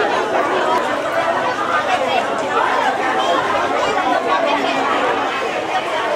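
Crowd chatter: many people talking over one another at a steady level, with no single voice standing out.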